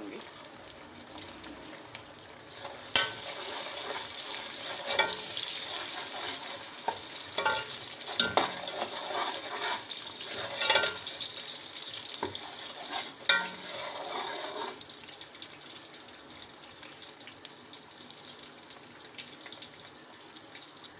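Sugar syrup with oil bubbling and sizzling in an aluminium pot as whole spices are stirred in, a metal slotted spoon clinking against the pot about six times. The stirring stops near three-quarters of the way through, and the bubbling goes on alone, a little quieter.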